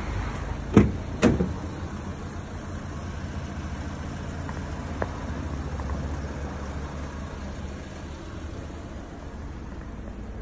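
A van door being handled: two sharp clunks about a second in, then a light click about halfway through, over a steady low rumble.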